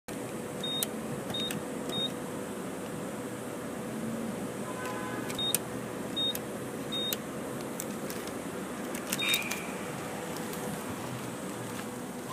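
Car wash pay station keypad beeping as its buttons are pressed to enter a code: seven short high beeps, each with a click of the button, in a group of three, then three, then a last one, over a steady background hum.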